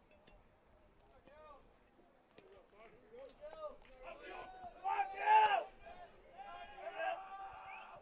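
Faint speech: voices talking in the background, loudest about five seconds in.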